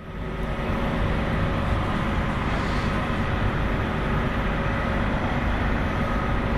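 Large buses idling: a steady low engine rumble with a constant hum over it.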